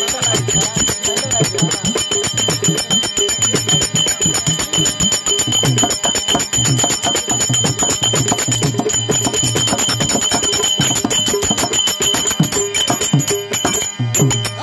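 Therukoothu accompaniment music: fast, continuous metallic strikes with a steady high ringing, over an irregular low drum beat.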